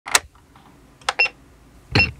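A plastic slide switch on an electronic music toy clicks on. About a second later there are two more plastic clicks, the second with a short, high electronic beep.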